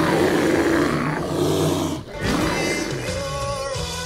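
A bear roaring loudly. The roar starts suddenly and lasts about two seconds, then music with a sustained melody begins.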